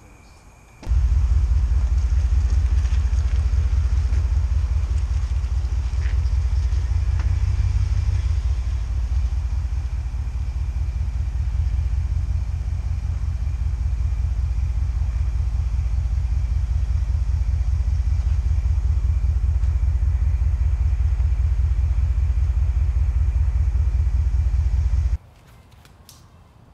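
Low, steady rumble of the 2014 Ford SVT Raptor's 6.2-litre V8 idling, heard from behind the truck near the exhaust. It starts abruptly about a second in and cuts off just before the end.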